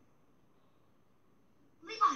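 Near silence, then near the end a short, sudden cry that falls in pitch.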